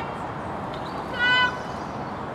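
A single short, high-pitched call about a second in, over a steady background hiss.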